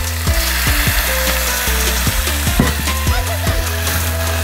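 Sliced apples sizzling in a cast-iron skillet as whiskey is poured in and the pan flares up, under background music with a steady beat.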